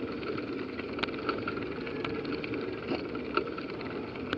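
Bicycle ridden uphill on asphalt, picked up by a handlebar-mounted camera: steady tyre and wind noise with small irregular clicks and rattles.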